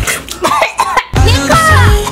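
Background music with a bass beat, with a person coughing over it.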